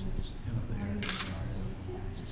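Indistinct murmur of people's voices as guests are greeted and hands shaken, with one brief, sharp clicking noise about a second in.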